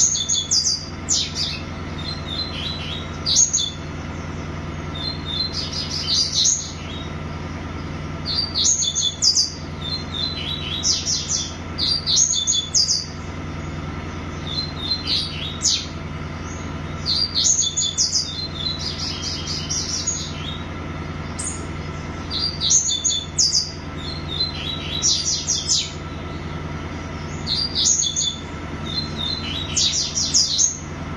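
A small caged songbird singing, about ten short phrases of quick, high, chirping notes, each a second or so long, coming every two to three seconds. A steady low hum runs underneath.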